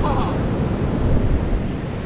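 Wind buffeting the microphone over the steady rush of surf breaking on the beach.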